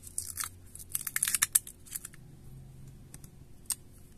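Short crackles and tearing as the adhesive pull tab along the bottom of a Xiaomi Redmi 9T's battery is peeled up by hand, most of them in the first two seconds and one more near the end.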